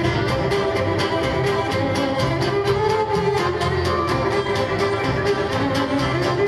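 Live folk band music: a fiddle leads over a strummed acoustic guitar and accordion, in a fast, steady rhythm.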